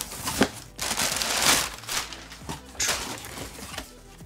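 Cardboard shipping box being opened by hand: flaps scraping and folding back, with paper rustling inside, in irregular bursts that are loudest about a second and a half in.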